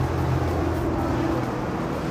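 Steady low engine hum of a nearby road vehicle over general traffic noise, easing off about a second and a half in.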